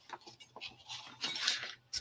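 Black cardstock being handled on a cutting mat: a few light taps, then a second or so of papery rustling and sliding starting about a second in.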